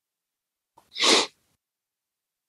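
A single short, breathy burst from a person about a second in, lasting under half a second, with no voice in it.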